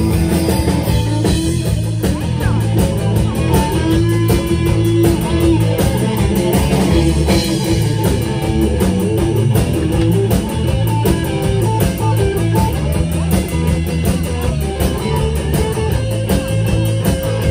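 Live blues band playing an instrumental passage: electric guitar lead with bent notes over a second electric guitar, electric bass and drum kit.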